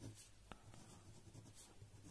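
Faint scratching of a pen writing on ruled notebook paper, with one light tick about a quarter of the way in.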